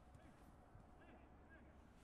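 Near silence, with only faint distant voices from the pitch.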